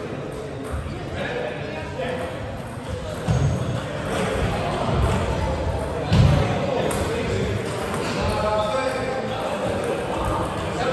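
Sports hall ambience during table tennis play: echoing background voices and the light knocks of table tennis balls from the tables. Two dull thuds stand out, about three and six seconds in.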